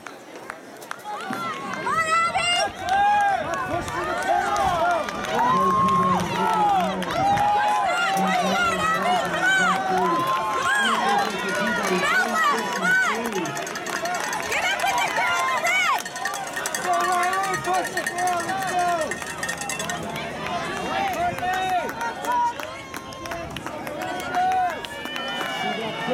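Spectators at a track race shouting and cheering runners on, many voices calling out at once and overlapping.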